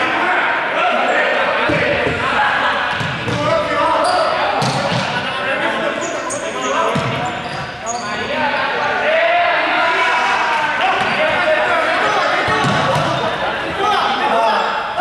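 Many young people's voices chattering and calling out together, echoing in a large sports hall, with a ball thudding on the court floor several times.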